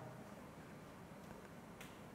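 Near silence: room tone, with a faint click near the end.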